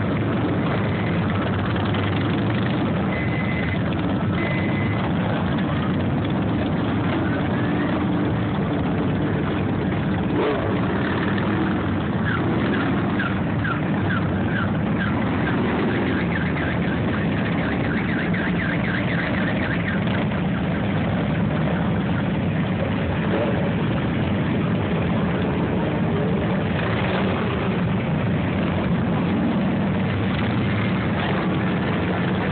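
A large pack of motorcycles, mostly cruiser and touring bikes, running together in a loud, steady engine rumble as they roll past at low speed.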